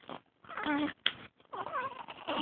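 A pet animal's vocal calls: two short, wavering, pitched calls, the first about half a second in and the second about a second and a half in, with a brief sharp sound between them.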